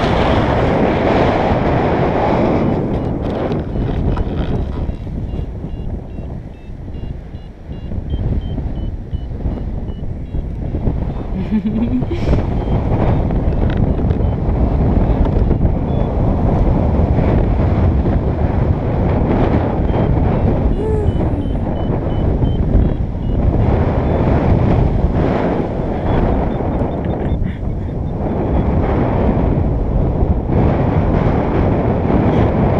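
Wind rushing over an action camera's microphone in paragliding flight, a loud steady buffeting. Runs of faint short high beeps, stepping in pitch, come through it at intervals, the sound of a flight variometer signalling lift.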